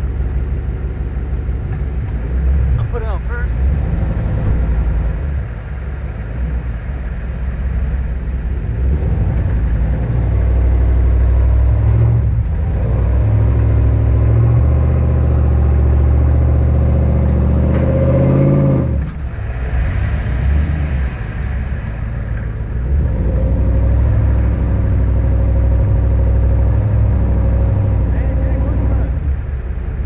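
Pickup truck engine revving hard under load during a tow-strap pull of a truck stuck in sand. The revs build and hold, fall away sharply about two-thirds of the way through, then climb and hold again near the end.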